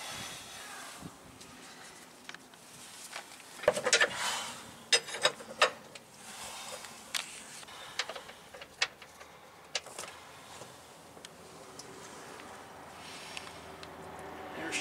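Scattered sharp metal clicks and knocks of a socket wrench working a heavy truck's oil-pan drain plug loose over a plastic catch tray, with a cluster of loud clacks about four to six seconds in.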